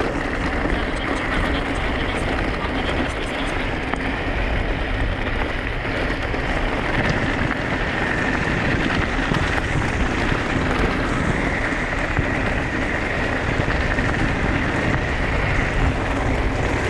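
Steady ride noise of an e-mountain bike rolling along a dirt and gravel track: tyres rumbling over the loose surface, with wind buffeting the camera microphone.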